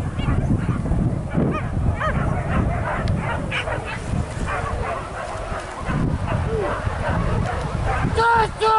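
Hunting dogs barking and yelping on a wild boar chase, in short scattered calls, with people's voices and shouts mixed in.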